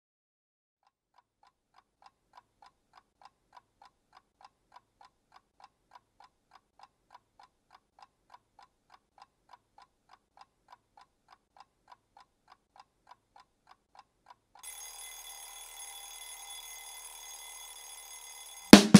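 A mechanical clock ticking steadily and faintly. Near the end an alarm clock bell starts ringing continuously.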